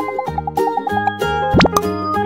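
Children's background music with a steady beat, with cartoon sound effects laid over it: a quick run of about ten small plops in the first second, and a fast rising whistle-like glide about one and a half seconds in.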